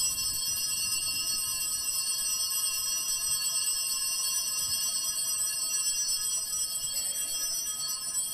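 Altar (Sanctus) bells rung continuously, a steady high ringing of several tones. This marks the elevation of the consecrated chalice at Mass.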